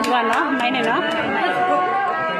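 Voices chattering over backing music that holds steady sustained tones, with a few sharp clicks in the first second.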